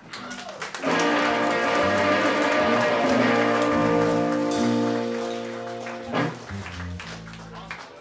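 Live rock band: electric guitars hold long ringing chords over a few drum hits. The sound dies down after about five seconds and ends on lower held notes.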